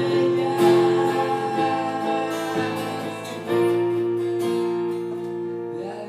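Acoustic guitar and electric keyboard playing together live, with held chords. New chords are struck about half a second in and again about three and a half seconds in, and the sound slowly fades toward the end.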